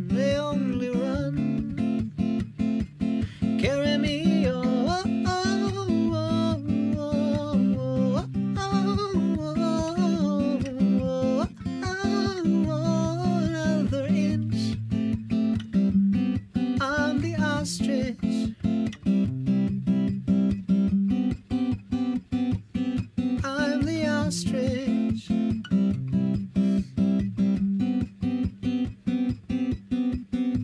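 Acoustic guitar strummed in a steady rhythm with a man singing over it. The voice is heard mostly in the first half and comes back only in short phrases later.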